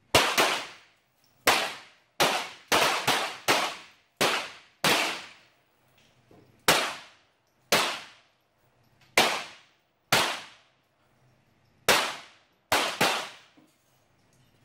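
.22LR semi-automatic target pistols firing from several lanes of the firing line during the slow precision stage: about fifteen sharp reports at irregular intervals, each with a short echoing tail.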